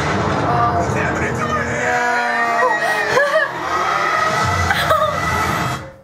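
Animated film trailer soundtrack: music and sound effects, with wavering, sliding tones over a dense noisy bed, cutting off suddenly near the end.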